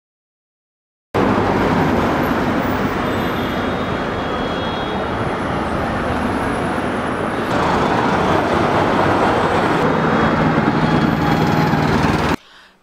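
Silence, then about a second in steady road traffic noise begins: cars running on a city street.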